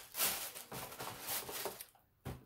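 Tissue paper rustling and crinkling in several short bursts as a shoe is pulled out of a cardboard shoebox.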